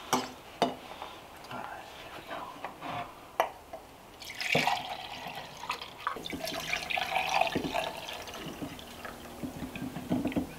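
A few light clinks as cinnamon sticks are set into ceramic mugs, then thick eggnog pouring from a ceramic pitcher into the mugs from about halfway through.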